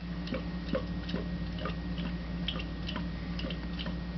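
Irregular light ticking clicks, a few a second, over a steady low hum.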